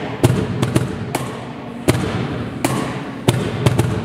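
Sharp percussive knocks at a slow, uneven beat, about one every three-quarters of a second with a quick flurry near the end, over a steady low hum: a percussion rhythm opening a live acoustic song.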